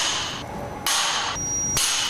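Gym machine weight stack clanking: three metal impacts about a second apart.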